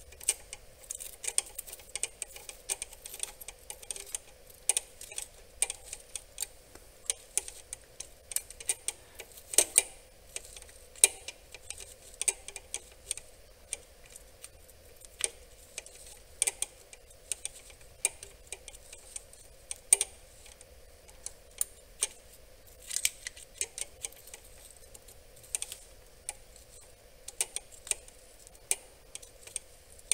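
Socket ratchet clicking in short, irregular runs of ticks as a glow plug is run down into the cylinder head.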